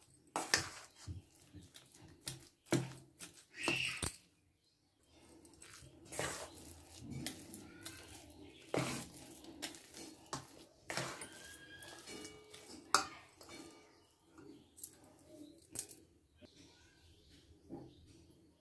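Metal spoon stirring a thick mix of flour and grated bottle gourd in a stainless steel bowl: irregular scrapes and clinks against the bowl, with a brief pause about four seconds in.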